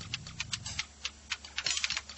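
Rapid, irregular clicking and tapping, a run of short sharp ticks close together.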